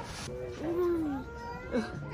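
A child's wordless voice, a drawn-out sliding 'ooh'-like call, with other voices overlapping.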